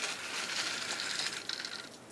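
Canvas boat canopy being pulled back and folded on its metal frame: a steady rustle of fabric sliding that stops just before the end.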